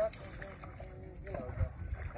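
Men's voices talking faintly over a low, steady rumble, with a brief low knock about one and a half seconds in.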